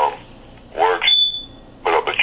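A voice sounds briefly, then a single short, high-pitched electronic beep lasting about half a second, starting about halfway through.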